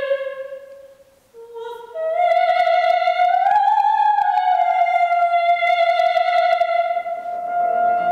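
Solo soprano singing an opera aria: a held note ends about a second in, and after a short breath she takes a higher note that rises, swells and is sustained for several seconds. Piano chords come in under the held note near the end.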